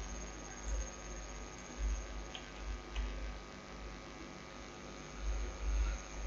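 Low, steady electrical mains hum picked up by the recording microphone, with a couple of faint clicks near the middle.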